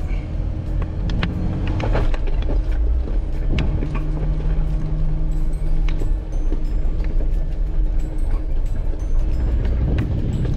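Jeep Wrangler Rubicon crawling over a loose rock trail: a steady low rumble of engine and tyres, with frequent clicks and rattles as the rough trail shakes the heavily loaded rig.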